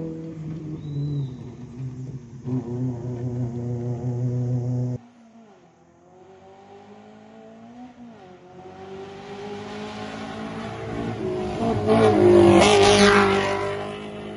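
Rally Maruti Gypsy 4x4s running flat out on a gravel stage. One car's engine is held at high revs for about five seconds until the sound cuts abruptly. Then another car's engine note rises as it approaches and peaks as it passes close near the end, with a burst of tyre and gravel noise, before fading.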